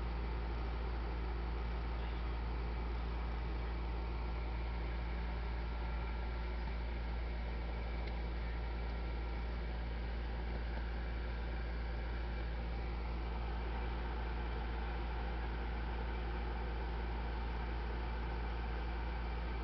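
Steady low hum with a faint even hiss, unchanging throughout, with no distinct sounds in it.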